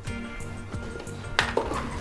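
Caster sugar poured from a small bowl into a ceramic mixing bowl, faint under soft background music. A single knock of crockery comes about one and a half seconds in.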